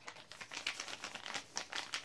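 A sealed sheet-mask sachet being rubbed between the fingers close to the microphone: a dense, irregular crinkling and crackling of the packet, done to mix and spread the mask's contents before opening.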